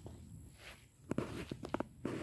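Footsteps on grass, with a cluster of short steps about a second in.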